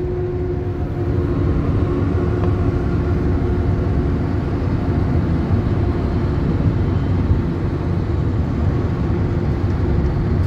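Steady low rumble of tyre and engine noise in the cabin of a car driving at highway speed.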